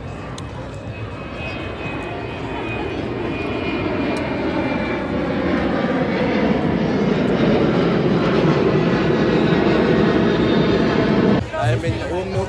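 A propeller or jet airliner flying low overhead, its engine noise a steady rumble that grows louder over about ten seconds, over faint crowd chatter. It cuts off abruptly near the end.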